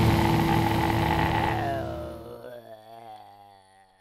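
The final seconds of a death metal track: heavily distorted guitars, bass and drums play full on, then stop about two seconds in. A last chord is left ringing, its pitch wavering, and it fades to silence just before the end.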